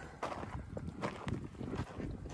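Footsteps crunching on a gravel and rock trail, several irregular steps.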